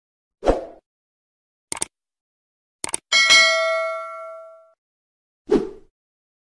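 Edited intro sound effects: a low thump, two short double clicks, then a bright metallic ding that rings for about a second and a half and fades, and another low thump just before the end.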